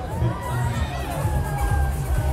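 Riders on a giant pendulum swing ride screaming together in long, wavering cries as the gondola swings high, over loud fairground music with a heavy bass beat.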